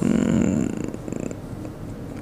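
A woman's voice trailing off in a low, creaky hesitation sound, a slow run of throat pulses that fades over about a second and a half.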